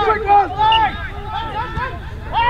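Several men shouting at once across a rugby pitch, overlapping indistinct calls from players and touchline.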